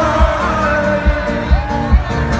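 Live music from an arena concert: a sung melody over a beat of low thumps.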